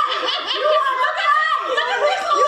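Several people laughing and chattering over one another.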